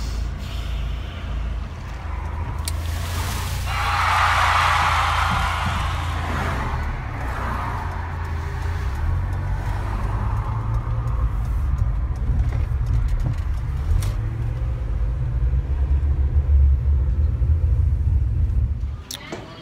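Car cabin noise while driving: a steady low rumble of engine and tyres, with a louder rushing noise swelling about four seconds in and fading over the next few seconds.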